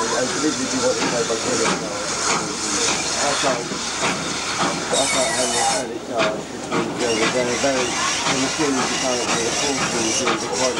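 Steam train pulling out, heard from a carriage: steady running noise and hissing steam, with a stronger burst of hiss about halfway through. Passengers' voices chatter underneath.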